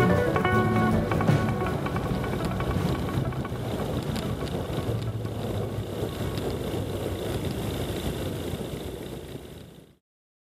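Background music fading out in the first second or two, leaving the steady noise of a Tecnam P92 Echo ultralight's engine, propeller and wind as it rolls along the runway. The noise fades out near the end.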